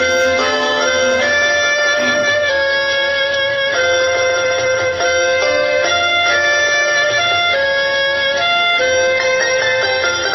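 Instrumental interlude of a karaoke backing track for an old Hindi film song: a melody of long held notes over accompaniment, with no singing.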